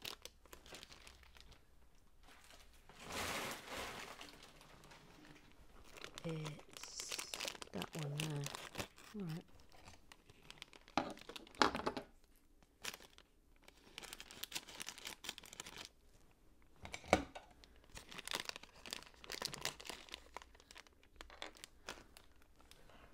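Clear plastic LEGO parts bag crinkling as it is handled and transparent orange pieces are picked out of it, with a few sharp clicks of plastic pieces, the loudest near the middle and again about three quarters in.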